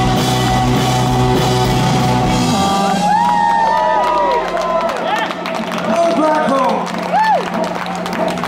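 A live rock band (electric guitars, bass and drums) holds its final chord for about two and a half seconds, then cuts off. The crowd follows with cheering, whoops and whistles, while a steady low tone lingers from the stage.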